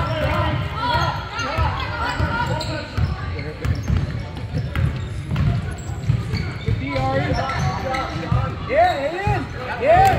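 A basketball being dribbled on a gym floor during play, with players and spectators calling out and talking in the echoing gym. Sneakers squeak in short rising-and-falling chirps near the end.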